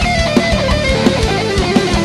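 A heavy metal band playing live: an electric guitar lead line stepping down in pitch over distorted rhythm guitar, bass and a steady pounding kick drum.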